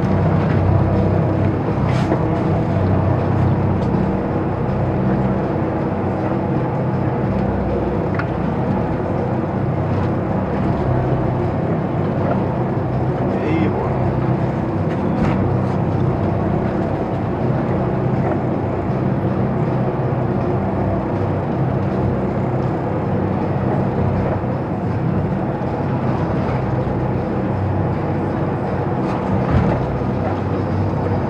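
Twin Scania diesel engines of a patrol boat running steadily under way, heard from inside the wheelhouse as an even low drone, with a few light clicks.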